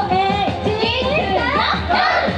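Idol pop song playing live, with high young female voices shouting and calling over it rather than singing; a run of high, rising calls comes about a second in.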